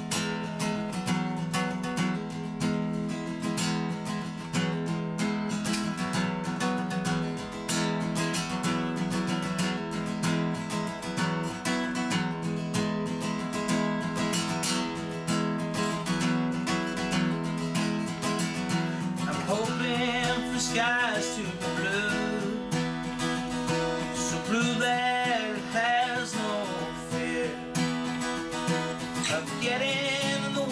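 Acoustic guitar strummed in a steady rhythm, a solo song intro; a man's singing voice comes in about two-thirds of the way through, over the guitar.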